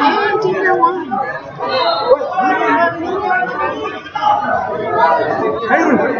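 Chatter of several people talking at once, overlapping voices with no single speaker standing out.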